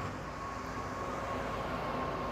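Distant road traffic: a steady low rumble and hiss that grows slightly louder, with a faint thin whine along with it.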